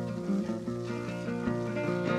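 Solo guitar playing the intro of a country song, a string of plucked notes over ringing chords.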